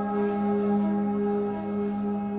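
Amplified cello bowed into a sustained, bell-like drone: one strong low note held with many steady overtones layered above it, easing slightly in level near the end.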